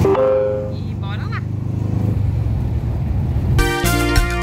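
Volkswagen Kombi's engine running steadily, a low rumble heard from inside the van's cabin while it drives. Music starts near the end.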